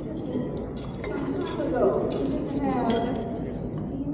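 Glasses and silverware clinking on dinner tables, several light clinks, over people talking at the tables.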